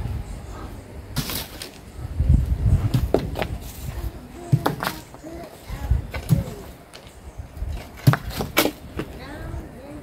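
A shovel digging into stony ground. Its blade strikes and scrapes stones with several sharp clinks, between dull thuds as it is driven in and levered.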